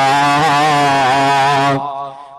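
A man's voice holding one long drawn-out note in a chant-like sermon delivery, with a slight waver in pitch, trailing off near the end.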